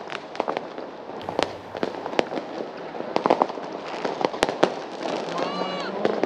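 Firecrackers and fireworks going off at irregular intervals, a string of sharp bangs over the steady noise of a large crowd, with a short pitched sound near the end.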